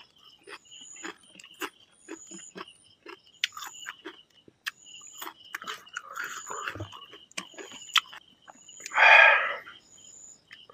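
Close-up sounds of eating rice by hand: wet lip smacks, chewing and fingers working the food on a steel plate, as a run of short clicks. Behind them, repeated high chirps of night creatures. About nine seconds in there is a brief loud clatter, as the steel bowl of dal is picked up to pour.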